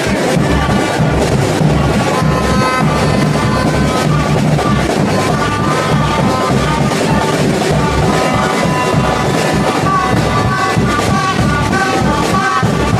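Street drum band playing a steady dance rhythm on a large bass drum and smaller drums, with a pitched melody over it.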